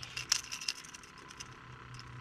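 Fishing tackle giving light metallic clicks and jingles as a freshly caught pinfish is held up on the line, busiest in the first second and then fainter, over a low steady hum.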